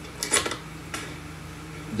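A few light clicks and knocks, a quick cluster about a third of a second in and one more near one second, over a steady low hum.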